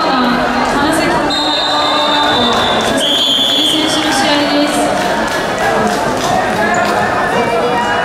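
A sports hall full of overlapping voices and shouts. A long, steady whistle blast sounds from about a second in to about four seconds, dropping to a lower pitch partway through. Scattered short thuds run underneath.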